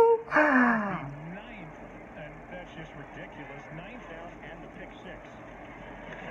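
A man's short, loud exclamation falling in pitch about half a second in, then faint football broadcast audio with a commentator talking.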